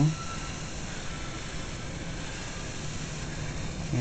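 Steady hissing of a slayer exciter (kacher) coil's high-frequency plasma discharge, with a faint low hum underneath.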